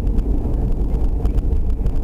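Steady road and engine noise heard inside a car's cabin while cruising at expressway speed: an even low rumble with no distinct events.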